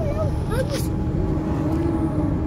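Steady road and engine noise heard from inside a car moving at highway speed, with a person's voice in the first second.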